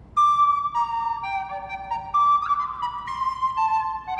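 Solo wooden recorder playing an unaccompanied melody, one note at a time in quick steps, starting a moment in.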